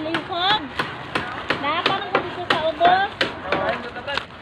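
Sharp knocks, roughly three a second at an uneven pace, over people talking.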